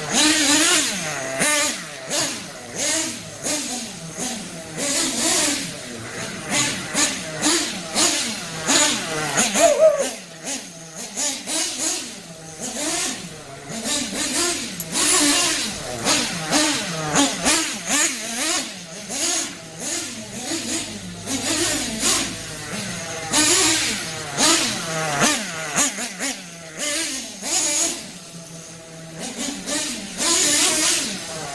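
Nitro glow engine of a Kyosho FO-XX GP radio-controlled car, revving up and down again and again as the car is driven in short throttle bursts. The engine is still being broken in, on its second tank of fuel.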